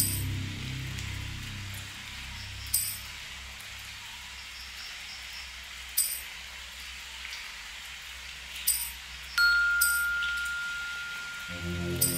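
Ambient soundscape made in GarageBand: a steady low drone with sparse chime strikes every few seconds. The strike about three-quarters of the way through rings on as a held tone, and the low drone swells near the end.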